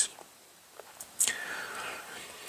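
A man's faint in-breath, an airy sound starting a little over a second in after a moment of near silence.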